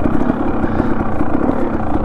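Dirt bike engine running steadily with no change in revs, heard from on the bike.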